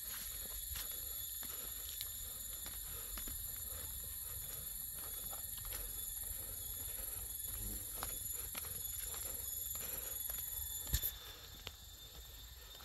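A steady, high-pitched chorus of insects, with scattered light clicks and a low rumble underneath. A sharp click comes near the end, and the chorus then drops away.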